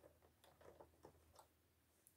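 Near silence with a few faint, light clicks as hands handle yarn and the plastic needles of a circular knitting machine.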